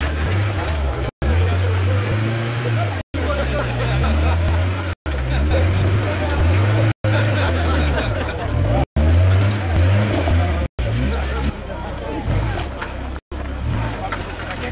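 Suzuki Samurai off-road truck's engine revving up and down under load as it crawls up a rocky slope, with spectators talking over it. The sound cuts out briefly about every two seconds.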